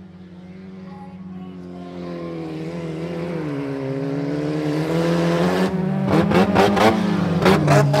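Folkrace cars' engines approaching on the dirt track, getting steadily louder, with engine pitch rising and falling as they accelerate and lift. From a little past halfway a rough, rapid crackle of sharp cracks joins in as the cars come close.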